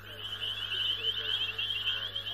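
A dense, steady chorus of rapid, high chirping animal calls over a constant low hum, with a few fainter, lower wavering calls mixed in.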